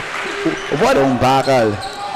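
Basketball being dribbled on a hardwood court, with sharp bounces, under a man's excited commentary.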